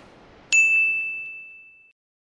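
A single high-pitched ding, a chime sound effect, struck about half a second in and ringing out for about a second and a half.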